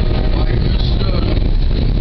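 A moving VIA Rail passenger train heard from inside the coach: a loud, steady rumble of wheels running on the rails.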